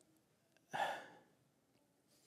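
A man's single audible sigh, about a second in, loud at first and then fading over half a second: an emotional pause, as he is choked up while speaking.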